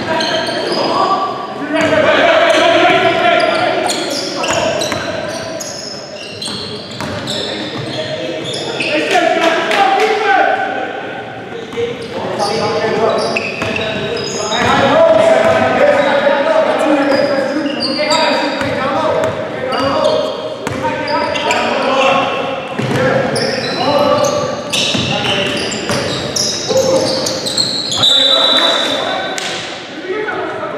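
A basketball being dribbled and bouncing on a hardwood gym floor during play, with players' voices, echoing in a large gymnasium.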